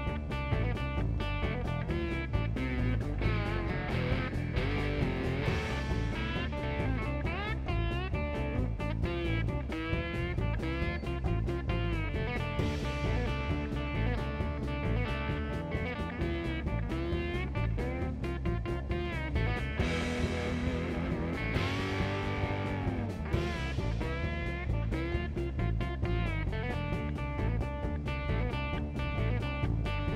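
Blues instrumental led by an electric lap steel guitar played with a steel bar, its notes sliding up and down in pitch, over bass guitar and drums keeping a steady beat.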